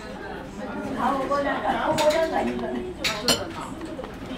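Soft background voices in a restaurant, with a few sharp clinks of tableware: one about two seconds in and two close together just after three seconds.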